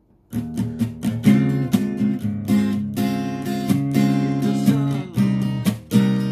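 Yamaha APX 500 II acoustic-electric guitar strummed in a steady rhythmic pattern. It starts just after a brief pause, and the chords change every second or two.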